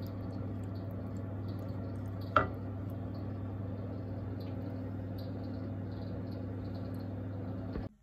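A wooden spoon stirring a thick cream-and-mushroom sauce in a nonstick frying pan, with one sharp knock of the spoon against the pan about two and a half seconds in, over a steady low hum; the sound cuts off just before the end.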